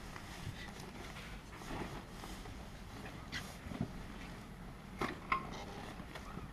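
Quiet outdoor background with a low steady hum and a few soft clicks and rustles, the clearest of them about five seconds in.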